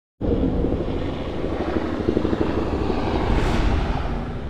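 Helicopter sound effect: rotor and engine running, starting suddenly, with a rising whoosh near the end.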